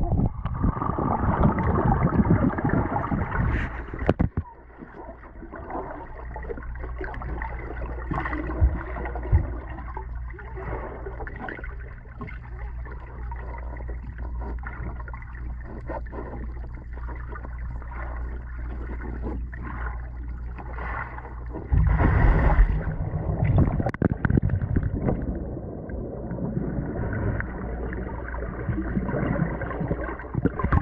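Pool water heard by a camera held underwater: muffled gurgling and sloshing with faint crackling, over a steady low hum from about four seconds in. About two thirds of the way through comes a loud muffled rush of water lasting a couple of seconds.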